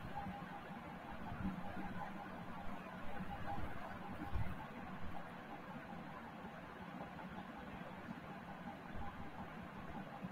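Faint steady room tone: a low background hiss with a light hum, and no distinct sound events.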